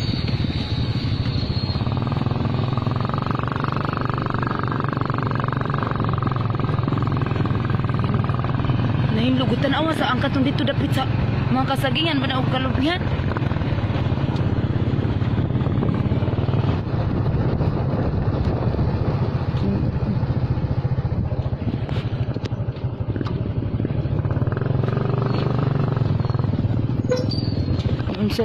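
Motorcycle engine running steadily as it rides along, a constant low hum.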